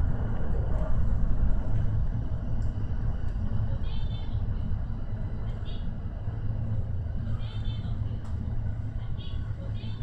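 Electric commuter train running, heard from the front of the car: a steady low rumble of wheels on rail that eases off slightly as the train slows into a station.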